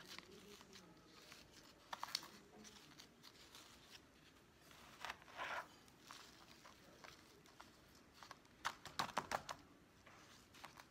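Hands working loose potting mix with perlite into a pot around a plant's roots: faint rustling and crackling, with a few louder scrapes and clicks about two seconds in, around five seconds in, and a quick cluster near nine seconds.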